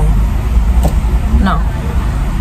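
Steady low rumble inside a car, with a woman's short spoken "No" about one and a half seconds in.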